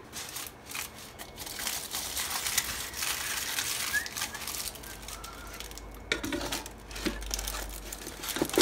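Aluminium foil crinkling as hands grip a foil sling and lift and lower a loaded cooking basket, with a few light knocks.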